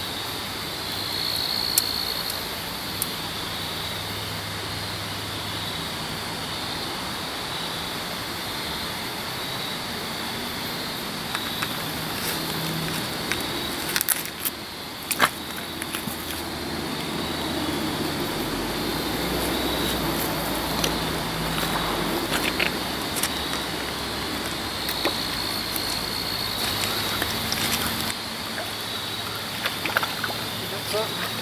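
Steady rush of flowing river water under a thin, steady high tone, with scattered clicks and rattles of fishing gear being handled; the sharpest clicks come in a cluster about halfway through.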